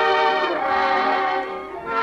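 Orchestral music from a 1930s radio programme, with strings and brass playing a melody. The music dips briefly near the end before picking up again.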